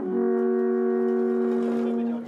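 Brass instruments playing a melody that settles on a long held chord, several notes sounding together for about two seconds before it fades.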